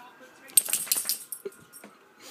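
A boxer dog's metal collar tags jingling in a quick, rattly burst about half a second in, lasting under a second, as the dog moves close by.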